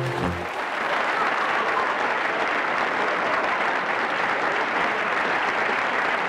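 Audience applauding steadily after a song ends; the last notes of the backing music stop about half a second in.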